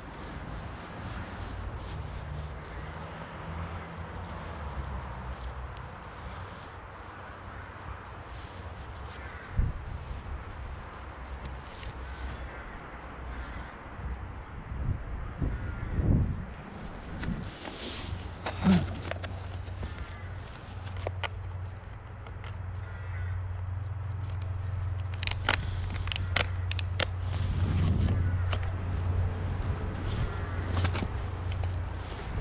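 Footsteps and handling knocks on dry leaves and grass, a few separate thumps spread through, with a cluster of sharp clicks later on, over a steady low rumble that grows louder in the second half.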